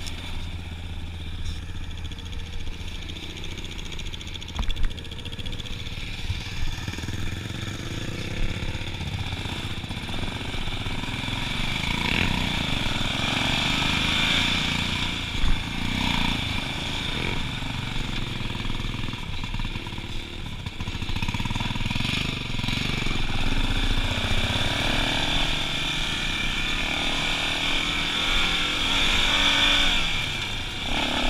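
Yamaha Raptor 350 ATV's single-cylinder engine running under way on a trail ride, its note rising and falling with the throttle. Two sharp knocks stand out, about 5 and 15 seconds in.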